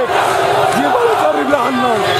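Large crowd of men chanting a slogan in unison, with a continuous din of crowd noise around it; a new chanted phrase begins a little before halfway through.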